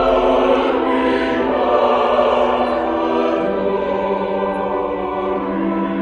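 Church choir singing in long sustained chords, the harmony moving to a lower bass note about three seconds in.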